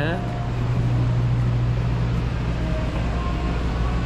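A steady low hum with no change in pitch or level. A man says one word at the very start, and faint short tones are heard about three seconds in.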